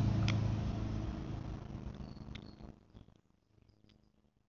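A steady low hum that fades away over about three seconds to near silence, with a few faint clicks.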